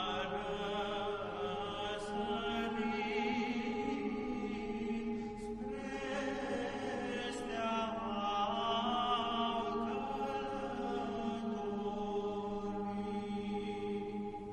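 A vocal ensemble singing a Romanian colindă, a traditional Christmas carol for the Three Kings, in long held notes over a steady low note. There is a brief breath between phrases about halfway through.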